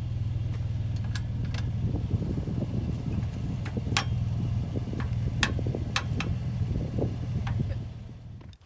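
Truck engine idling steadily, with scattered metallic clicks and clanks as a trailer coupler and its safety chains are worked off the hitch ball. The idle stops just before the end.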